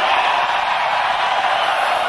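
A steady rushing hiss of white noise with no beat under it: the build-up of an electronic dance track played live, just before the drop.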